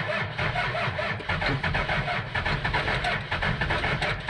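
Old truck's starter motor cranking the engine over in an even, rhythmic chug without it catching: the battery is flat.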